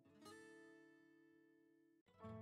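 Near silence with faint background music: a single soft plucked guitar chord about a quarter second in, dying away within a second.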